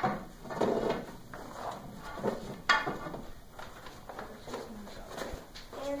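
Plastic drawers of a multi-drawer storage case clattering and sliding shut, with a sharp click nearly three seconds in and scraping handling sounds around it.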